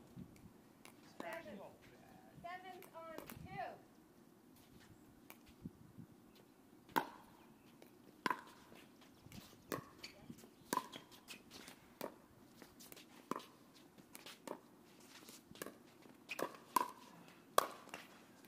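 Pickleball rally: paddles striking the plastic ball in sharp, short hits, starting about seven seconds in and coming roughly once a second, quicker near the end, with fainter taps between. Voices are heard before the rally begins.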